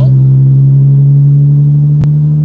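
A loud, steady low hum with a stack of even overtones, holding one unchanging pitch, with a small click at the end.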